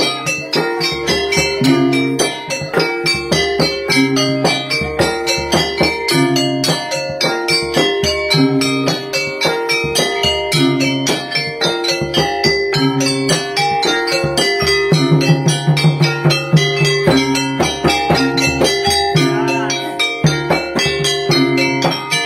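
Traditional Banjar music from South Kalimantan played live: a fast, even run of bell-like struck notes over a steady beat.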